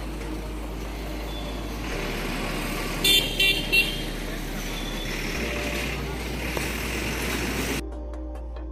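Road traffic noise with a vehicle horn sounding three short honks in quick succession a little after three seconds in.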